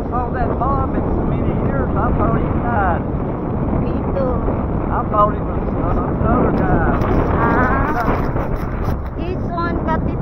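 Wind buffeting the microphone on a moving motorcycle, a steady low rumble with the bike running underneath, and muffled, unintelligible talk breaking through now and then.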